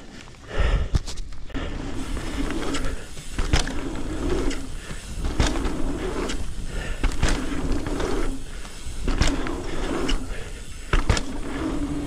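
Mountain bike on Hunt Enduro Wide 27.5 wheels riding a dirt-jump line: tyres rolling on packed dirt over a low rumble, with sharp knocks and rattles from the bike every second or two as it goes over the jumps.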